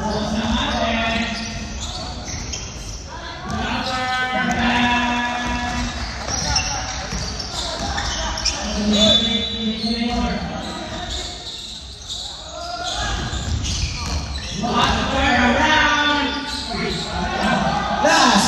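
Basketball game sounds in a gym: a ball bouncing on the hardwood court and players calling out to one another, echoing in the large hall.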